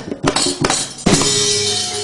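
A dalang's keprak and cempala knocking a quick run of sharp wooden and metal clacks, the cue for the gamelan, which comes in about a second in with ringing metallophone tones under a bright jingling of small cymbals.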